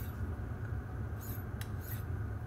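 A couple of faint, brief scrapes of a steel knife blade against a DMT Extra Fine diamond sharpening plate in the second half, with a light click, over a steady low hum.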